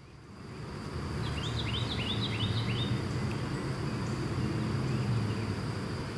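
Outdoor ambience: a low rumble swells up over the first second and then holds steady, under a steady high insect drone. A bird sings a quick run of about ten short chirps between one and three seconds in.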